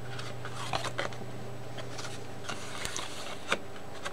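Paper tags and pages of a handmade journal being handled and turned by hand: light rustles and soft clicks scattered through, with one sharper click about three and a half seconds in, over a steady low hum.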